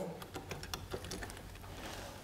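Faint, irregular light clicks and taps from the boom arm of a shoulder positioning device being adjusted by hand, over a low hum.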